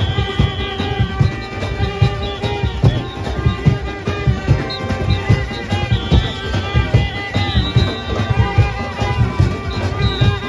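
Junkanoo band playing live: a fast, dense beat on large hand-held drums under brass horns and a sousaphone holding long notes.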